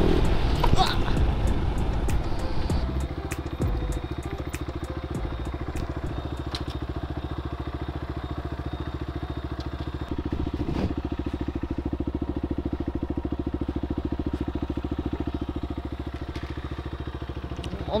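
Buccaneer 125 motorcycle engine slowing as the bike comes off a speed bump, with a jolt and a short cry about a second in. It then settles into a steady, even idle with the bike stopped.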